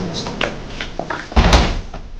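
A few light clicks and knocks, then one heavy thud about one and a half seconds in.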